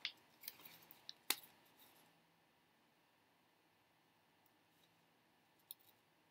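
Scissors snipping paper: about four short, sharp cuts in the first second and a half, then near silence with a faint click or two near the end.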